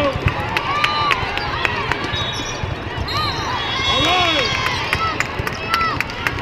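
Indoor volleyball play in a large arena hall: volleyballs being struck and bouncing in many separate knocks, sneakers squeaking on the court, over a steady murmur of spectators' voices.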